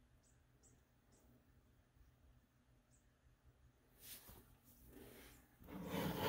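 Near silence broken by a few faint, short high-pitched chirps. From about four seconds in, hands pick up and handle an assembled plastic Lego model, making rustling and light knocking that grows louder near the end.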